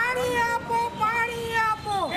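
A group of men shouting a protest slogan together, one long drawn-out call that rises at the start, holds and drops away near the end.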